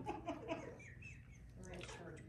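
Faint voices in a quiet room, with a few short high falling chirps a little under a second in.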